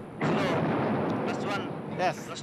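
Rocket engines at liftoff: a sudden loud rush of noise starts about a quarter second in and holds steady, with a voice faintly under it.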